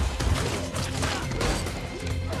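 Action-film fight-scene soundtrack: score music under a rapid run of crashes and hard impact hits.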